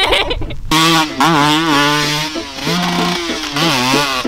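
Dirt bike engine revving hard, starting about a second in, held high with several quick dips and rises in pitch as the throttle is eased and opened again.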